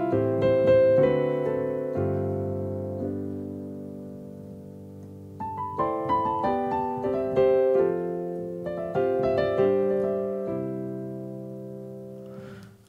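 Roland RD-2000 digital stage piano's Solo Jazz Grand preset playing two-handed chords. A first group of chords is left to ring and fade, then a second phrase of chords starts about five and a half seconds in and dies away near the end.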